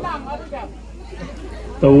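Quiet background chatter of people talking, then a loud voice starts up near the end.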